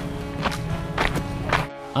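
Background music: sustained tones with a steady beat of about two strikes a second, cutting off suddenly near the end.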